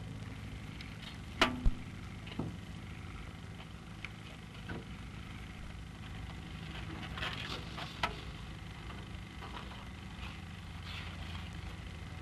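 Steady low hum and background noise of an early sound-film recording, with a few sharp clicks and knocks, the loudest about a second and a half in.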